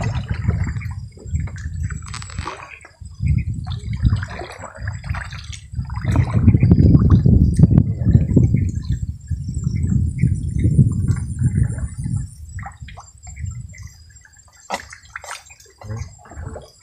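Water splashing and dripping as a fishing net is hauled by hand out of a river into a small boat, over a low, uneven rumble, with a few sharp clicks near the end.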